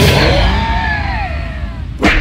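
Cartoon fight sound effect over music: as a punch lands, a wavering tone slides down in pitch for about a second and a half and fades away.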